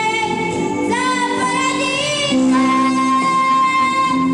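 A young boy singing an Italian pop ballad into a microphone, his voice wavering with vibrato, over a live band accompaniment.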